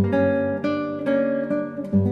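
Nylon-string classical guitar played fingerstyle: a slow melody of plucked notes that ring into one another, with a strong low note struck at the start and again near the end.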